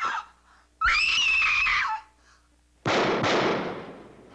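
A woman's scream, high and held for about a second, then a sudden loud bang about three seconds in that dies away over roughly a second.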